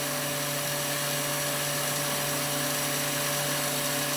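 Rotary vane vacuum pump running with a steady, unchanging hum as it pulls a resin trap down to deep vacuum, below 30 millibar and still dropping.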